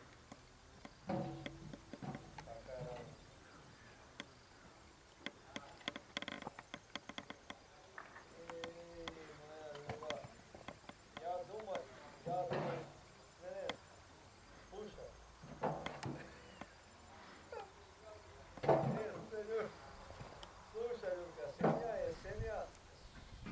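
Faint, indistinct voices talking on and off, with many scattered sharp ticks and clicks between them.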